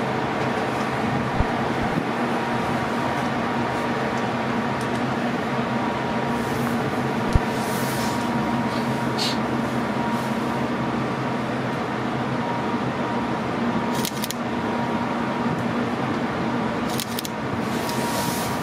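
Steady machinery drone heard aboard a Hurtigruten coastal ship: an even low hum with a fainter steady higher tone, broken only by a couple of faint clicks.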